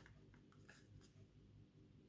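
Near silence: room tone, with a few faint clicks of a small cardboard box being handled in the first second.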